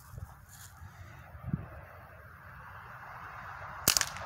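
A BB gun fires once, a single sharp crack near the end, after a few seconds of quiet outdoor hush with one soft thump about halfway through.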